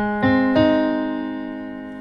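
Yamaha PSR-SX900 keyboard in a piano voice sounding the four (IV) chord of a one-four-one-five progression: three notes come in one after another within about half a second, then the chord is held and slowly fades.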